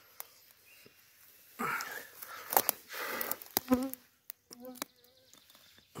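Footsteps rustling through forest undergrowth in several short bursts. A flying insect buzzes close by twice, briefly, in the second half.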